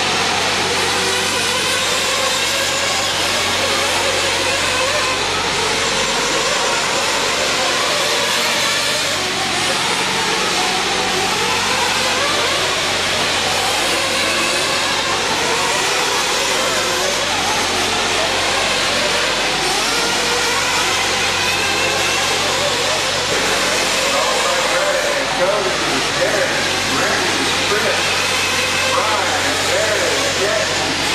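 Several RC truggies racing together, their engines revving up and down in an overlapping, steady din, with voices mixed in.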